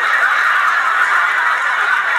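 Studio audience laughing steadily, heard through a television speaker.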